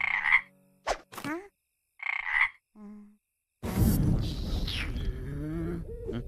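Cartoon frog-croak sound effects, two short croaks about two seconds apart, with brief squeaky rising glides between them. They come from a cartoon vampire whose cheeks puff out like a frog's. About three and a half seconds in, a loud noisy rush with sweeping tones takes over.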